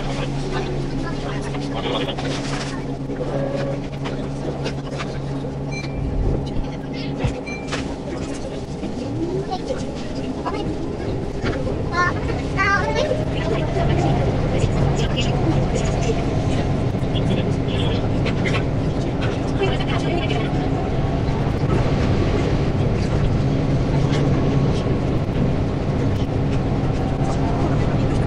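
Keihan 8000 series electric train running, played back sped up: a steady hum with tones that rise as the train pulls away and gathers speed, growing louder from about halfway. Garbled, voice-like chatter is mixed in.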